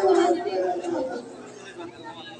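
A man's voice crying out on stage with long, drawn-out vowels, loud at first and fading about a second in, leaving quieter scattered voices.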